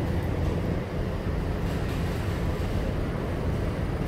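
Steady low rumble of street traffic, with a van driving along the road.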